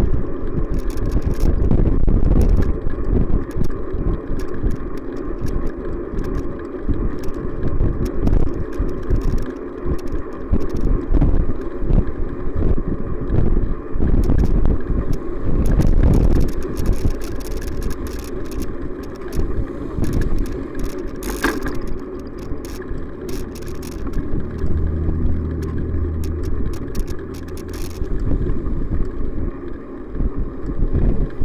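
Riding noise picked up by a camera on a moving bicycle: a steady low rumble of wind and road with frequent small rattles and knocks from the bike. Motor traffic passes, and a van passing close alongside about halfway through is the loudest moment. Near the end a steady low engine hum comes in.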